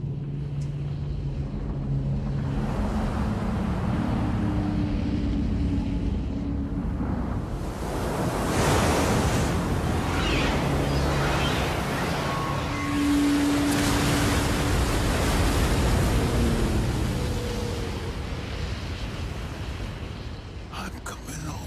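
Film sound effects of a giant tsunami wave: a continuous rushing roar of water that grows louder about eight seconds in, with held orchestral notes underneath.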